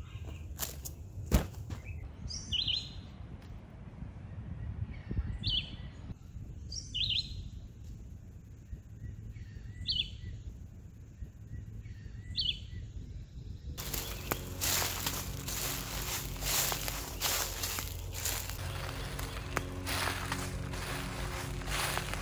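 A bird repeating a short chirping call about every two and a half seconds over a low outdoor rumble. About two-thirds of the way through, the sound changes suddenly to a louder, dense rustling and crackling.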